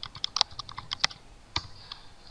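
Typing on a computer keyboard: a quick run of key clicks in the first second, then one louder keystroke about one and a half seconds in.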